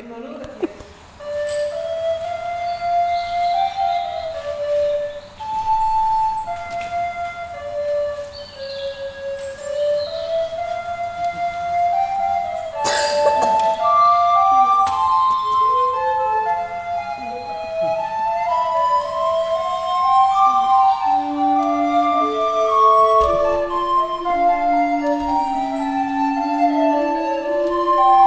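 Recorders playing: a single recorder starts a slow melody of held notes, more recorders join about halfway through, and a lower recorder part enters near the end, building to several parts together. A single sharp knock sounds about halfway through.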